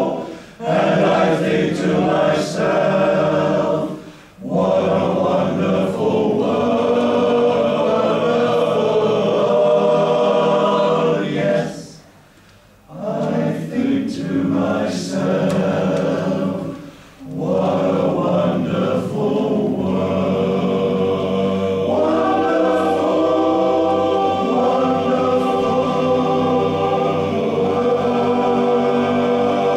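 Male voice choir singing, in phrases with short breaks between them and a longer pause about halfway through.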